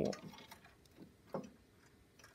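A few faint clicks and taps of a steel brake cable end being worked out of its hole in a Snapper rear-engine riding mower, the loudest a little past a second in.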